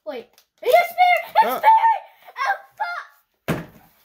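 Young girls' excited voices, then a single thunk about three and a half seconds in.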